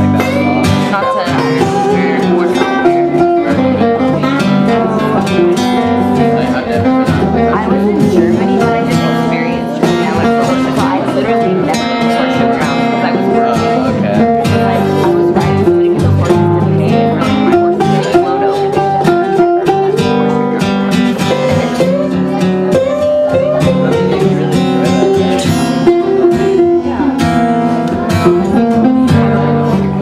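Two guitars played together live, a steel-string acoustic and an archtop, in a continuous picked and strummed instrumental jam.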